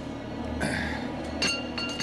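A low steady hum, a brief hiss about half a second in, then a bright ringing chime-like tone that strikes about one and a half seconds in and holds.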